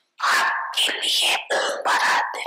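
A woman's voice close to a microphone, in four short, rough bursts with brief breaks between them.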